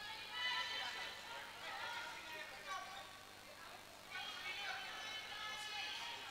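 Faint voices of softball players calling out across an indoor sports hall, high-pitched shouts coming in several bursts.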